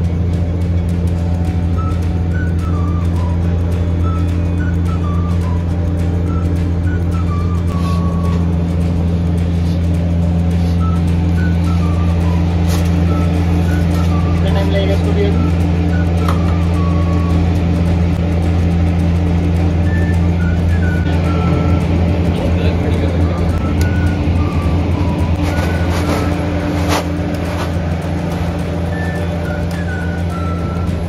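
Steady low mechanical hum of commercial kitchen machinery, with scattered light clicks and knocks from handling. Faint background music with short, falling melodic phrases plays over it.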